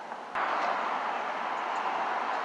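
A steady, even rushing noise with no pitch or rhythm that starts abruptly about a third of a second in, where the recording resumes after an edit.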